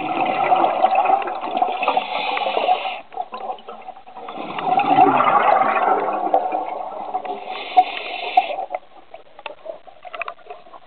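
A scuba diver exhaling through a regulator underwater: two long bursts of bubbling, the second starting about four seconds in and lasting about four seconds.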